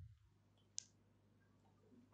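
Near silence with a single computer mouse click a little under a second in.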